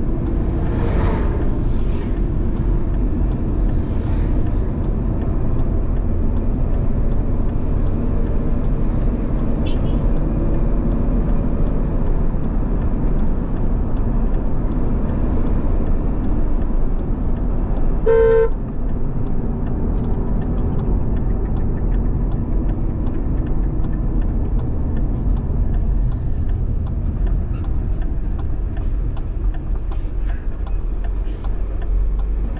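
Steady engine and tyre rumble from inside a moving car's cabin, with a brief rush of noise near the start. About two-thirds of the way through, a car horn gives one short toot.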